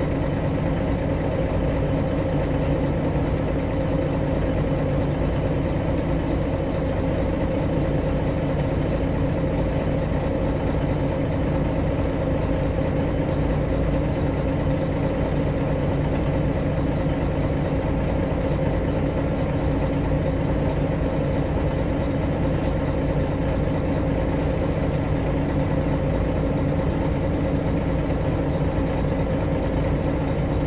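Diesel engine of a MAN NG313 articulated city bus idling steadily, heard from inside the passenger cabin, its pitch holding level throughout.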